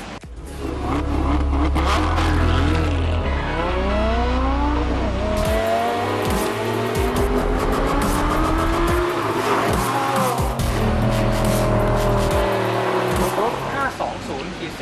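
A sports car's engine pulling hard through the gears, its pitch climbing over a few seconds and dropping back at each shift, several times over, under background music with a deep bass.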